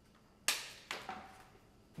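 Two quick strokes of a sickle blade shaving the rind off a sugarcane stalk, about half a second apart, the first louder, each dying away fast.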